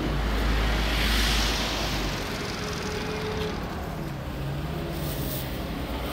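Road traffic beside the stall: a vehicle passes close by in the first two seconds, swelling and fading, followed by a quieter background of engine hum and road noise.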